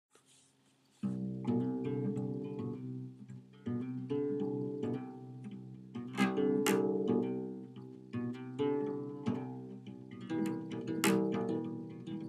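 Solo acoustic guitar, single notes picked one after another and left ringing into each other, starting about a second in.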